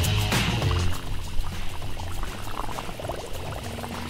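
Music ends about a second in and gives way to a water sound effect of a fountain, running and bubbling.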